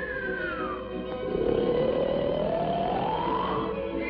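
Cartoon snoring sound effect over orchestral music: a whistle slides down in pitch at the start, then a raspy in-breath rises in pitch over about two seconds, in a repeating snore cycle.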